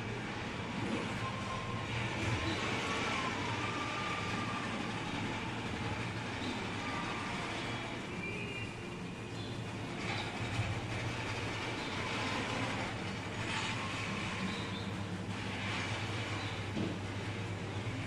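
Steady supermarket background noise: a constant low hum under an even rushing din, with faint brief sounds now and then.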